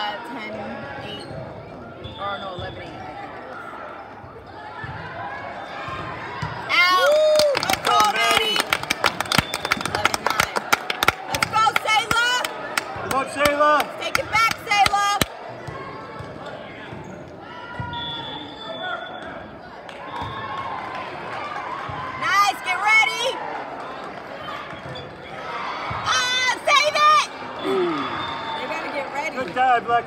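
Volleyball play in a large hall: the ball being struck and sneakers squeaking on the court, with players and spectators calling out over constant crowd chatter. The busiest stretch is a fast run of sharp hits and squeaks from about a quarter to halfway through, with two shorter flurries later.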